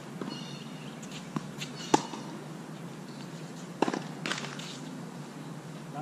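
Tennis ball struck by strings and bouncing on a hard court during a rally: four sharp pops, the loudest about two seconds in, two more close together near the four-second mark.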